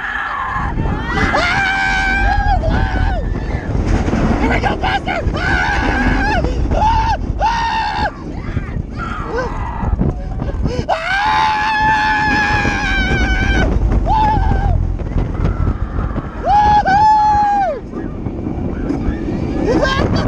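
Roller coaster riders screaming in a series of long held yells, over a steady low roar of wind rushing across the microphone as the train runs the track.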